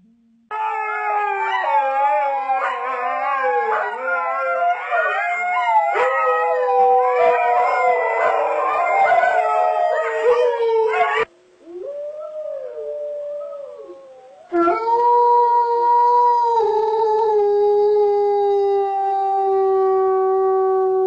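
Dogs howling: several overlapping, wavering howls that cut off suddenly about eleven seconds in, a quieter howl, then one long, steady howl held for several seconds and slowly falling in pitch.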